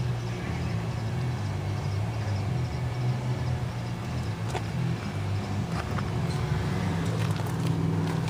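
The 2.2-litre four-cylinder engine of a 1996 Toyota Camry idling steadily, with a few light clicks partway through.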